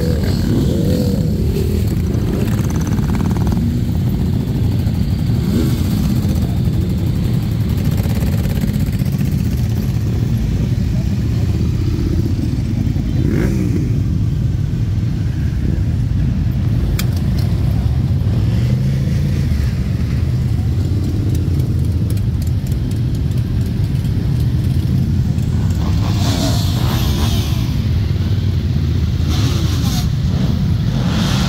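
A long procession of motorcycles riding slowly past, many engines running together in a loud, steady rumble, with a rev rising out of it now and then.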